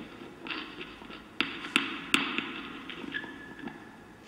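Amplified electric guitar laid flat on a table, its strings struck and scraped with small sticks near the bridge: a run of sharp metallic taps that ring on, the loudest in the middle, then a brief high steady tone a little after three seconds.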